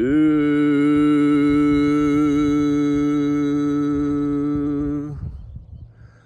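A man's voice chanting a single long held note, sliding up to pitch at the start, then steady with a slight waver for about five seconds before fading out.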